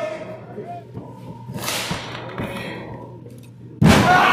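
A wrestler's body slamming onto the wrestling ring's mat near the end, one sharp, loud crack with a deep boom. Before it, faint voices and a brief rushing noise.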